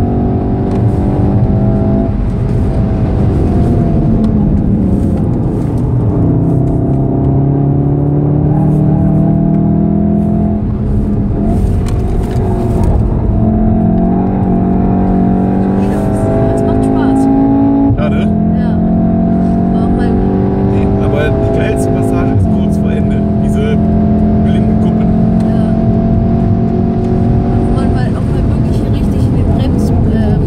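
Volkswagen Golf VII R's turbocharged four-cylinder engine heard from inside the cabin at track speed. Its pitch repeatedly climbs under acceleration and drops back at gear changes and lifts for corners, over steady tyre and road noise.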